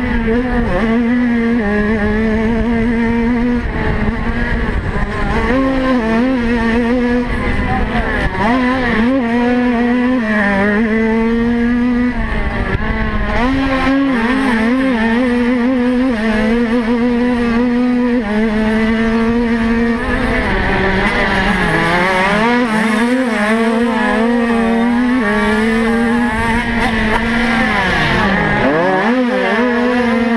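Mobcross bike's small moped-based engine heard from on board, running hard at high revs at a fairly steady pitch. The pitch wavers down and back up as the throttle is eased and opened again, with a deeper dip and recovery near the end.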